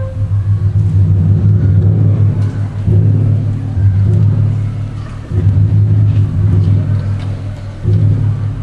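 Chamber orchestra playing low, sustained notes that shift pitch about every two to three seconds, heard as a deep rumble.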